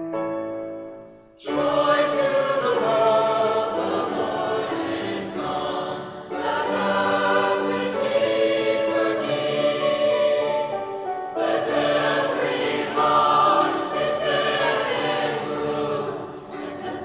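Mixed choir singing a Christmas carol in several parts with piano accompaniment, the voices coming in loudly about a second and a half in after a few piano notes, with short breaths between phrases.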